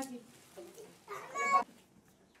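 A small child's high-pitched voice: a brief sound at the start, then a louder, longer one from about a second in.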